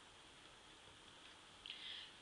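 Near silence: room tone, with a faint short hiss near the end.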